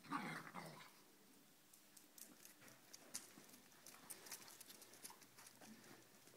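Dogs play-fighting: a brief dog vocalisation in the first second, then quiet scattered clicks and scuffs.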